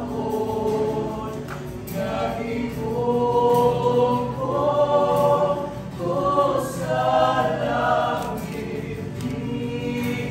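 A small group of singers singing together in harmony, with long held notes that swell louder through the middle.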